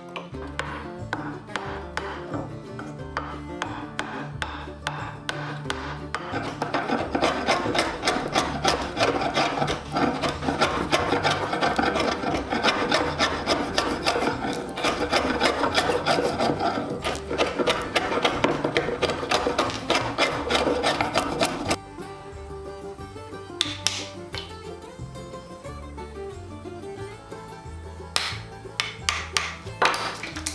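A large slick, a wide hand-pushed chisel, paring and splitting waste off the end of a wooden tabletop in quick scraping strokes, loudest and densest from about six seconds in until it stops suddenly a little past twenty seconds; a few sharp knocks follow near the end. Background music with a steady bass line runs underneath.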